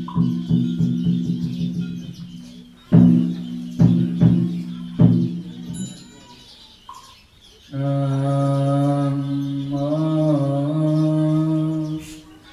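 Ritual percussion of a Buddhist chanting service struck several times, roughly a second apart, each strike ringing briefly. This is followed, from about two-thirds of the way in, by a long drawn-out chanted note from voices, its pitch shifting slightly partway through.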